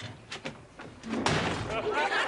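A door slams shut, and studio audience laughter rises sharply in the second half.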